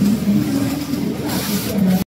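A three-system, 18-gauge computerized flat knitting machine (KSC-093A) running, its carriage driving along the needle bed with a steady motor hum that steps up and down in pitch every few tenths of a second.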